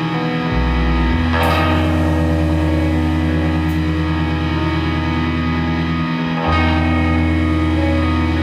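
A live rock band with electric guitars and bass playing sustained, held chords. The bass note shifts about half a second in and again near the end, and two cymbal crashes come about a second and a half in and about six and a half seconds in.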